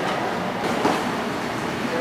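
Steady rushing background noise with no clear pitch, and a brief faint sound a little under a second in.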